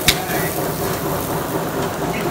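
Meat and shrimp sizzling over hot charcoal on a grill, a steady crackling hiss. A single sharp click comes just after the start.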